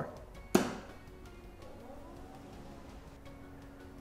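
The ink-cartridge door on the side of an Epson ColorWorks C3500 inkjet label printer is swung shut and closes with one sharp plastic snap about half a second in. A faint low steady hum follows.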